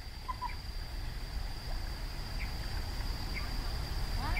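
Birds chirping, a few short scattered calls, over a steady high-pitched tone and a low rumble.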